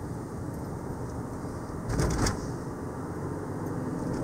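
Steady low rumble of a car's engine and tyres on the road, heard from inside the cabin while driving.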